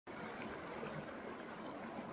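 Steady sound of a small mountain creek running, its water flowing through an open channel in the ice and snow.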